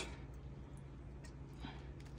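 Quiet handling of hand snips: a couple of faint clicks over a low steady hum.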